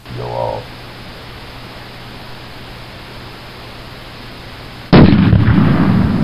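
A balloon filled with hydrogen and oxygen detonating: one sudden, very loud bang about five seconds in that trails off over a couple of seconds, over a steady hiss.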